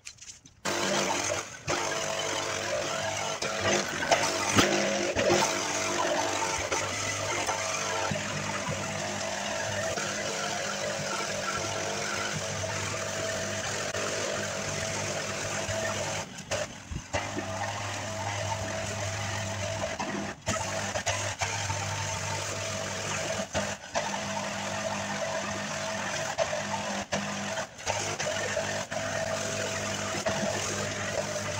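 Small engine of lawn-care equipment running steadily at a constant speed, broken by a few brief dropouts.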